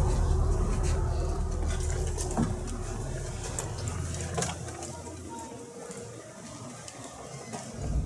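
A deep rumbling drone that fades away over several seconds, with a faint steady hum under it and a couple of soft knocks in the first half.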